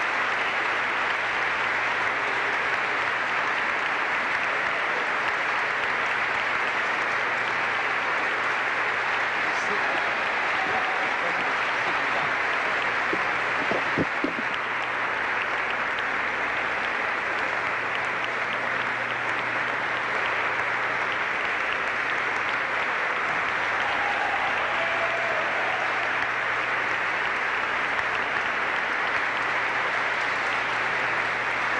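A large crowd applauding steadily, a dense unbroken clapping that holds at the same level throughout.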